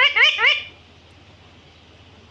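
Alexandrine parakeet giving a quick run of short, rising, chirping calls, about six or seven a second, which stop under a second in, leaving only a low steady hum.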